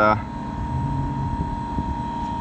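LG VRF mini-split outdoor unit running steadily, its condenser fans and inverter compressor making a low droning hum with a faint steady tone above it.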